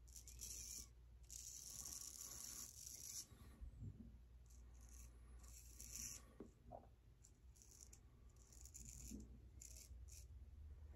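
Straight razor shaving lathered stubble: several faint, scratchy scraping strokes of the blade through the whiskers, one lasting about two seconds.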